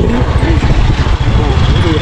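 Heavy wind rumble on the microphone of a moving step-through motorbike, with its small engine running underneath.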